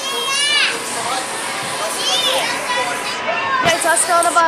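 Children's voices shouting and chattering, with two high calls that rise and fall, about half a second in and again at about two seconds.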